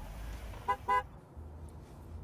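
A car horn gives two quick toots, about three quarters of a second in, over the low rumble of a car, heard as a film's soundtrack through loudspeakers in a hall.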